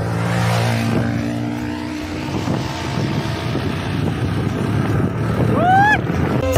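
Motorcycle engines running at road speed as a group of bikes rides close past, with wind rushing over the microphone. A short rising tone sounds near the end.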